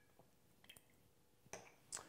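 Near silence with a few faint clicks, near the middle and near the end, from a glass swing-top bottle and a metal jigger being handled and set down.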